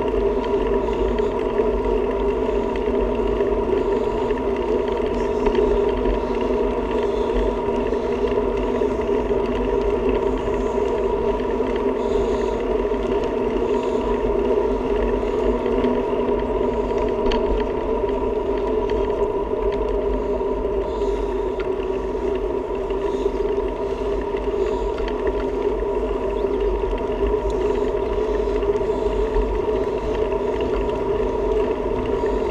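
Wind and road noise from a bicycle rolling steadily along asphalt, picked up by a camera on the bike: a constant low rumble with a steady droning hum over it.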